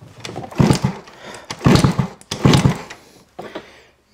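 Kick-starter of a Barton Falcon scooter's 1PE40QMB two-stroke engine kicked three times, about a second apart, each stroke a mechanical thunk as the engine turns over. The engine spins without compression because the spark plug is out for a spark test.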